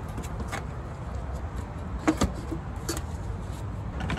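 A few light, scattered clicks and taps as a hose clamp is loosened and the air intake duct is worked off the engine, over a steady low rumble.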